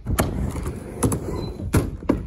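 Skateboard on a backyard ramp: wheels rolling with a steady rumble, broken by four sharp clacks of the board hitting the ramp. The loudest clacks come near the start and near the end.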